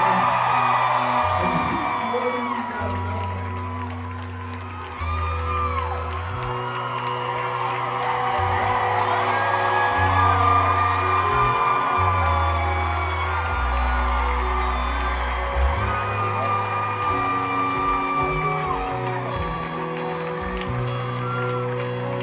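Live band playing a soft instrumental bed of long held bass notes and sustained chords, changing every second or two, while the concert crowd cheers and whoops throughout.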